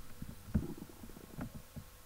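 A computer mouse being moved and handled on a desk: a few soft low taps, about half a second in and again around a second and a half, over a faint steady electrical hum.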